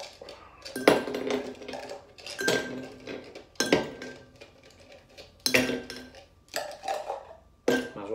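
Ice cubes poured into a tall drinking glass, clinking against the glass in about six separate bursts.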